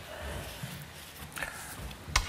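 Soft handling noises at a table as papers and cards are moved: a few low thumps, then a light click about one and a half seconds in.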